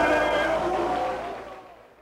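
Closing sound of a hip-hop track, held tones fading out over about two seconds and then cutting to silence.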